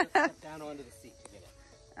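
A voice speaking briefly at the start, then a low background with faint music.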